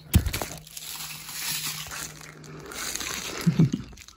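Plastic bubble wrap crinkling and rustling as it is handled, after a sharp knock just after the start.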